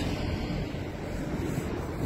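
A bus's engine and tyre noise fading as it moves away, leaving a low, steady street-traffic rumble with some wind on the microphone.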